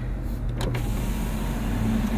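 Car power window motor running with a steady hum, after a couple of short clicks about half a second in.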